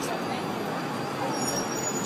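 Busy city street ambience: steady traffic noise with the voices of passers-by, and a faint high squeal near the end.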